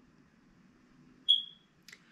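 A single short, high electronic beep a little past halfway, fading out quickly, followed by a faint click; otherwise quiet room tone.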